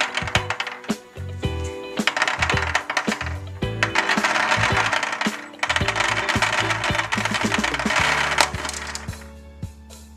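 Small balls pouring out of a glass jar and clattering onto a clear plastic tray, a quick run of clicks that thickens into a steady rattle through the middle and dies away near the end, over background music.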